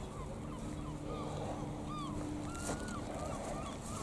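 A bird giving a series of short chirping calls, with one longer, level call about two-thirds of the way through, over a steady low hum that fades out about halfway.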